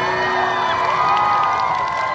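A pop song's backing music stops right at the start, and a crowd of fans cheers and screams in several high, drawn-out voices that overlap.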